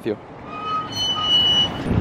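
City street traffic at a busy crossing, swelling louder as vehicles pass close, with a thin high-pitched electronic beep about halfway through.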